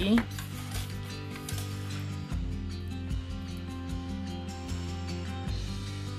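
Soft background music with sustained notes and a steady bass, under light scattered clicks and taps from a plastic ruler and aluminium flat craft wire being handled on a table.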